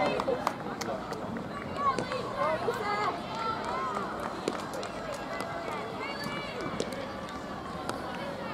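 Indistinct chatter of spectators' voices, strongest in the first half and fading toward the end, over steady outdoor background noise.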